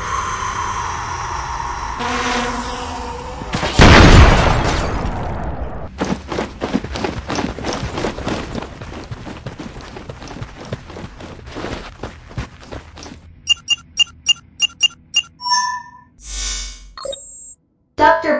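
Animated war sound effects over music: a drone flying in with its engine buzzing, then a loud explosion about four seconds in that dies away over a couple of seconds. A dense run of quick hits follows, and near the end a series of short, evenly spaced electronic beeps, about five a second.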